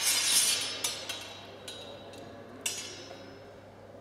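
Steel training longswords clinking blade on blade: the high ringing of a clash fades away over about the first second, followed by several lighter clinks about a second apart as the blades stay in a bind.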